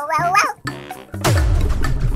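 Children's background music with a short, high, wavering cartoon-animal squeak at the start, then about a second in a loud cartoon 'poof' sound effect, a burst of noise with a falling low sweep.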